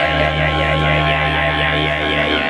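Didgeridoo playing a deep, steady drone that starts right at the beginning, with a wavering, vowel-like buzz of overtones above it.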